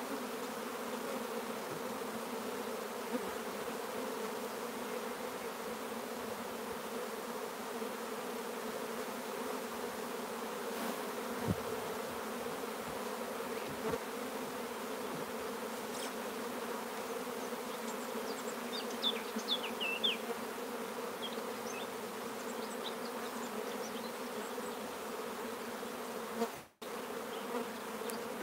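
Steady hum of a mass of honey bees flying around opened hives. The colony is stirred up by having its frames handled and shaken out.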